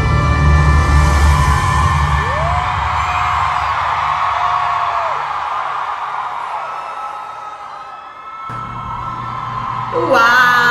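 Live concert audio of a female singer holding one long sung note over a sustained backing, with an audience cheering and whooping. The music fades toward the end.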